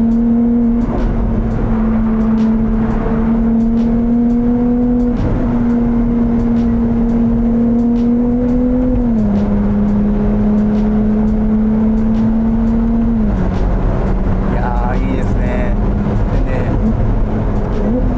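Ferrari 296 GTS's 3.0-litre twin-turbo V6 hybrid engine pulling at a steady, high-pitched note under load, heard from the open cockpit with the roof down. The pitch steps down twice, about nine and thirteen seconds in.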